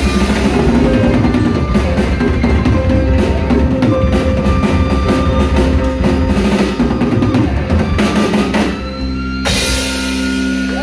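Live rock band playing an instrumental passage of a power ballad, with the drum kit prominent (bass drum and snare hits) under electric guitars and keyboard. Near the end a loud crash comes, and the band holds a ringing chord.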